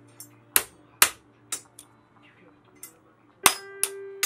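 Hammer striking a steel hole punch set in a perforated metal template, punching a Jacquard loom punch card: about eight sharp metallic clanks at uneven intervals. The loudest come about a second in and near the end, and the last ones ring briefly.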